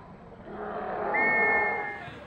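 Shouts from players and spectators swelling as the goalkeeper and an attacker collide in the goalmouth, then a referee's whistle blown in one steady blast of about a second near the end.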